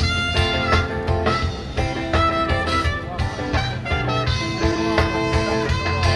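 Live rock band playing an instrumental passage: electric guitar over bass and drums with a steady beat.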